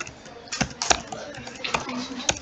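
A few sharp, irregularly spaced keystrokes on a computer keyboard, the loudest about a second in.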